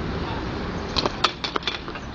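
Skateboard wheels rolling, then a quick run of sharp wooden clacks and knocks from about a second in, as the board snaps and hits the ground on a 360 flip attempt down three stairs.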